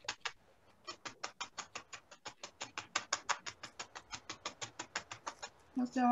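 Dry felting needle jabbing rapidly through wool into a foam pad, an even run of about six or seven faint jabs a second that stops shortly before the end.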